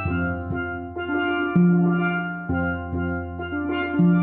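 Steelpans built by Steve Lawrie, played with five mallets in a slow improvisation: struck notes ring on and overlap into chords over sustained low bass notes, with a new strike every half second or so.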